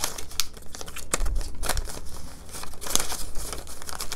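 Paper US dollar bills being handled and sorted by hand, rustling and crinkling, with frequent short crackles and snaps as the notes are flipped and pulled apart.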